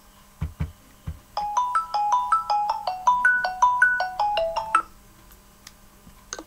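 A mobile phone ringtone: a quick melody of short, bright pitched notes, about five a second, playing for roughly three and a half seconds. Three dull thumps come just before it.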